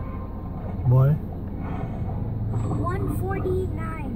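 Steady low hum of an idling car, heard from inside the cabin, with short bits of voice over it about a second in and again near the end.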